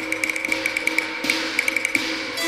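Cantonese opera accompaniment for a sudden-thunder cue: a held low drone under rapid, irregular light tapping, with one noisy crash about a second and a quarter in that stands for the thunder.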